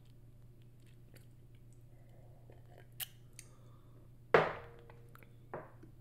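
Faint mouth sounds close to the microphone after a sip from a mug: small lip and tongue clicks, a sharper click about three seconds in, then a louder sudden sound that fades over half a second a little past four seconds, and a smaller one just before the end.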